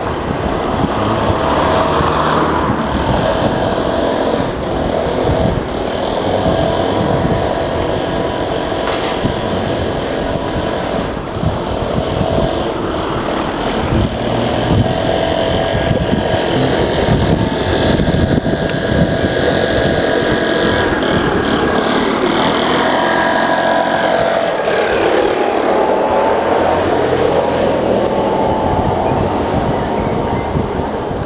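A bicycle being ridden on an asphalt road, heard from a handlebar-mounted camera: a continuous rumble of tyre and wind noise with frequent small knocks from bumps. A steady whine runs through it, falling in pitch and rising again near the end.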